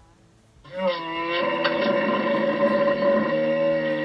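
Xiaomi AI smart speaker playing a recorded hippopotamus call: one long pitched call with strong overtones, starting just under a second in. The playback has no high treble.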